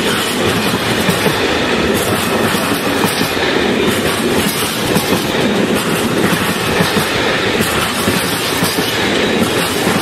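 Freight train of stake flat wagons rolling past close by: a steady, loud rolling noise of steel wheels on the rails.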